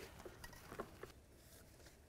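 Near silence with a few faint, scattered small ticks, mostly in the first second: wires being handled and pushed through a rubber firewall grommet.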